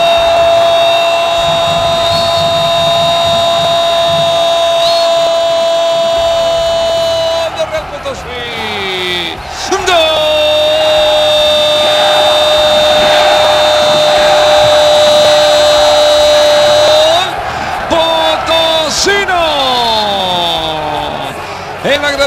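Spanish-language football commentator's drawn-out goal shout. A single vowel is held on one pitch for about seven seconds and slides down, then after a breath is held again for about seven more seconds before trailing off downward.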